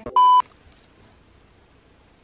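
A short, steady electronic test-tone beep lasting about a third of a second. It is the sound effect that goes with a TV colour-bar test pattern.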